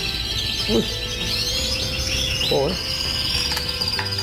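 Many canaries singing at once, a dense, unbroken run of overlapping trills and chirps.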